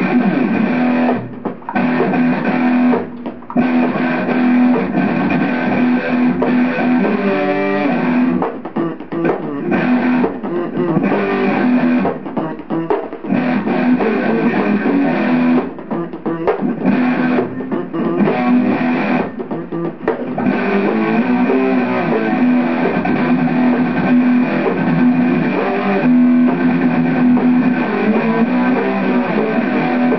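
Solo guitar playing, a low note ringing under the picked notes, with a few short breaks in the sound.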